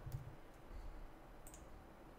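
Faint clicks of computer keys being typed and a mouse button being clicked, with a sharper single click about a second and a half in.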